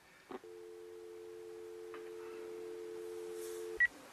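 Telephone handset: a click, then a steady dial tone of two held tones for about three and a half seconds, a sign the call has been hung up. A short high beep cuts it off near the end.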